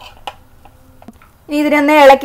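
A high voice speaking, breaking off for about a second and a half in which only a few faint clicks are heard, then speaking again near the end.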